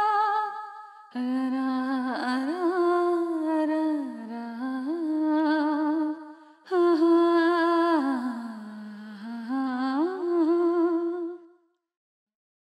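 A single voice humming a slow, wavering melody in long phrases, with short breaks between them, fading out near the end.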